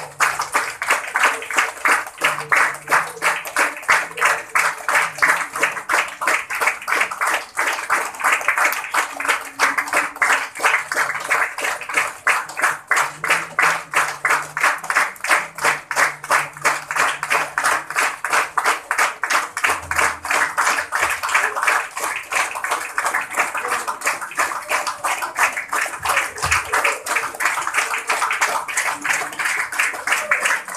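A crowd clapping in unison in a steady rhythm, about three claps a second, with the sound of many people in the background.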